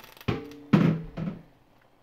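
Kitchen dishes and utensils knocking as they are handled: a light knock, then a heavier thunk about three-quarters of a second in and a softer one after it.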